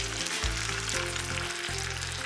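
Fat and juices sizzling steadily around mayonnaise-coated chicken breasts in a blue steel pan fresh out of the oven, under soft background music.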